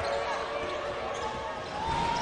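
Basketball being dribbled on a hardwood court: a few dull bounces under low arena voices.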